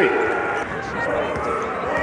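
Indoor basketball arena sound: steady crowd noise with scattered voices, and a basketball being dribbled on the hardwood court.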